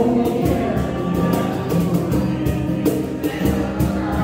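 Live acoustic song: an acoustic guitar strummed in a steady rhythm under a man's and a woman's singing voices.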